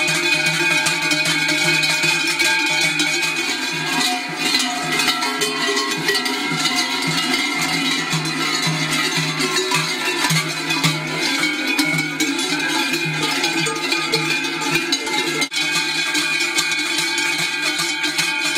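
Many large cowbells shaken together by a crowd, a continuous clanging of overlapping bell tones with an uneven shaking rhythm.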